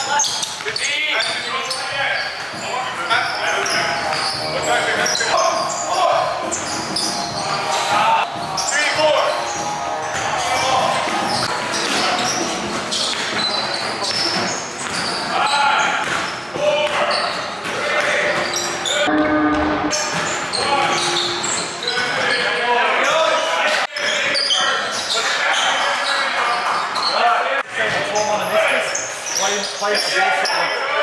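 Basketball game in a large indoor hall: a basketball bouncing on the court, with players' voices calling out indistinctly throughout.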